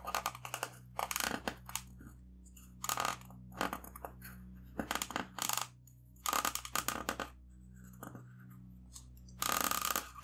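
Black felt-tip marker scratching across paper already coated in felt-tip ink, drawn in a series of short strokes with brief pauses between them.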